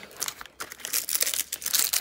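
Packaging crinkling and crackling as a boxed lip-gloss set is picked up and handled, a rapid run of crackles starting about half a second in.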